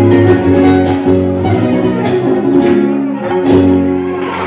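Huasteco trio playing huapango: a violin carrying the melody over the strummed jarana huasteca and the large quinta huapanguera guitar.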